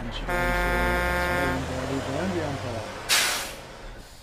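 A vehicle horn gives two steady blasts. The first is cut off right at the start and the second lasts about a second and a half, over a low engine rumble. About three seconds in comes a short, loud hiss of air.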